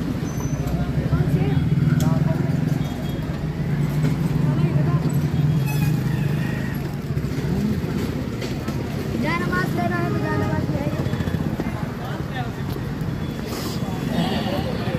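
Busy street traffic: a motor vehicle engine runs nearby with a steady low hum that eases off about halfway through, while passers-by talk.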